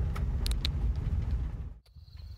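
Steady low rumble of a van driving slowly on an unpaved road, engine and tyres, with a few light clicks about half a second in. The sound cuts off abruptly just before the end.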